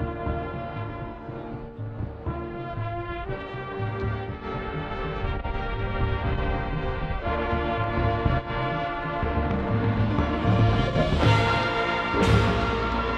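High school marching band playing: brass holding sustained chords over pulsing low drums, growing steadily louder and swelling to a bright crash near the end.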